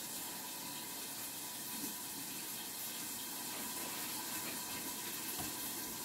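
Beef pan-frying on the stove, a steady sizzling hiss.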